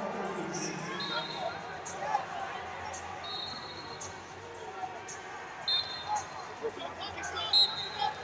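Background voices and chatter in a wrestling tournament hall, with four short referee's whistle blasts, the last and loudest near the end.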